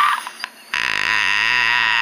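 A person's voice making a long, low, croaking sound, starting a little under a second in after a brief lull.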